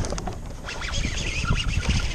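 A hooked bass splashing and thrashing at the water's surface in irregular bursts while it is reeled in on a baitcasting rod, over a low rumble.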